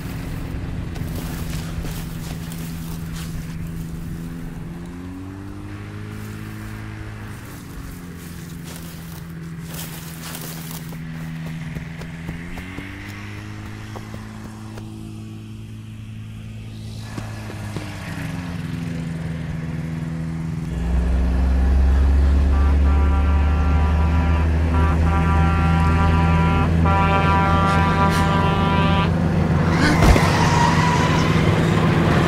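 A low-flying single-engine crop-duster plane drones overhead, its engine pitch rising and falling as it makes several passes. About two-thirds of the way in, a heavy truck's engine rumble comes in much louder, joined by a steady blaring horn that runs almost to the end.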